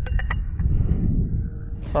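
Wind rumbling on the microphone, with a few quick clicks just at the start.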